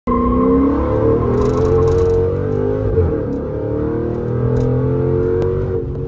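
Dodge Charger SRT8's Hemi V8 pulling hard under acceleration, heard from inside the cabin, its pitch climbing gradually. About three seconds in there is a brief break with a short jolt of loudness before the engine note picks up again.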